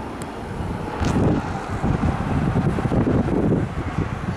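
Wind buffeting the microphone, getting louder about a second in, over the running of an ambulance van passing on the road. No siren is heard.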